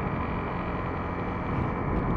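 Motorcycle riding along at steady speed: the engine running under a steady rush of wind across the camera microphone.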